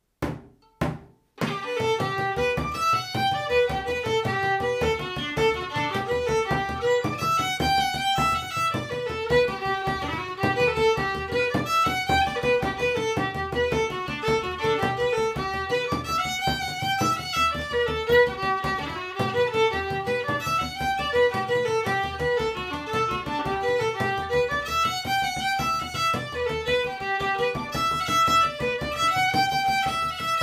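A few sharp knocks in the first second and a half, then a fiddle and a calfskin bodhrán played with a blackwood tipper launch into a lively Irish jig together. The fiddle carries the melody over the drum's steady pulse.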